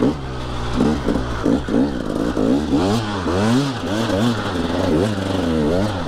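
Dirt bike engine on a rocky hill climb, revving up and down in short throttle bursts about twice a second as the rider feeds power to keep the rear tire from spinning.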